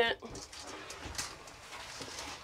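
Magnetic shower curtain pulled free of the shower wall and slid open along its curved rod: a faint rustle of fabric with a light tap about a second in.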